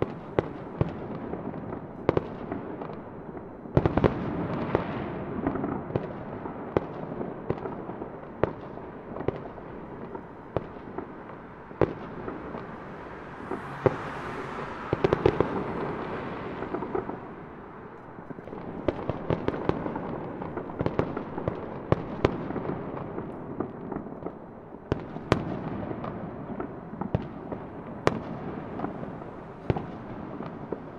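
Fireworks going off: a steady rumble of bursts with many sharp bangs scattered throughout, and a hiss about halfway through.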